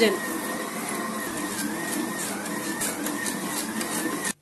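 Electric stand mixer running steadily, its dough hook kneading a whole-wheat semolina bread dough in a stainless steel bowl. The motor gives a steady whine that wavers slightly in pitch.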